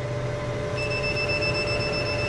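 808 nm diode laser hair-removal machine beeping in a rapid, high-pitched pulse as the handpiece fires, starting under a second in. The machine's steady hum runs underneath.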